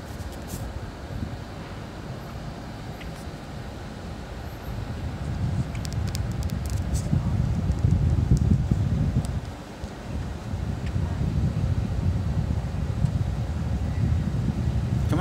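Low rumble of a vehicle with wind buffeting the microphone. It grows louder about five seconds in and dips briefly near ten seconds.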